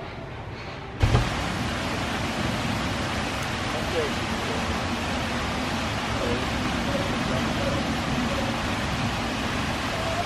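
A steady rushing hiss starts abruptly with a thump about a second in and carries on unchanged.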